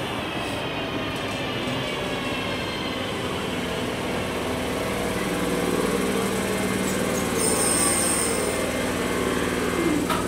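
Class 323 electric multiple unit drawing into the platform and slowing to a stop. Its motor whine falls in pitch in the first seconds and settles into a steady hum, with a short hiss about eight seconds in.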